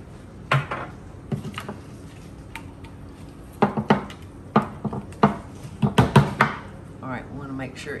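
A utensil knocking and scraping against a small glass mixing bowl as a mayonnaise dressing is stirred, in a run of irregular clinks through the middle of the stretch.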